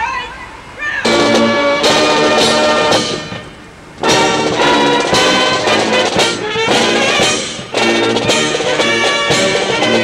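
Military brass band starts playing about a second in, breaks off briefly around the third second, then plays on.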